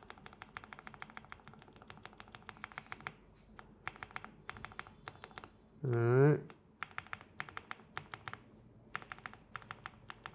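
Typing on a Spark 67 65% mechanical keyboard fitted with Marshmallow switches: a fast, continuous run of keystrokes with a couple of brief pauses. A short hum from a voice cuts in about six seconds in.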